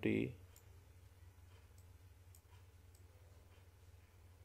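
A few faint, scattered clicks of a computer mouse over a steady low hum.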